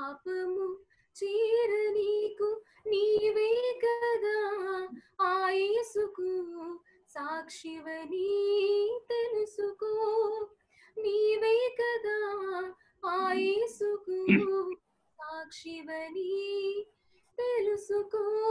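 A woman singing a Telugu Christian hymn solo and unaccompanied. She holds long notes with ornamented turns, in phrases broken by short, sudden silent gaps, heard over an online video call.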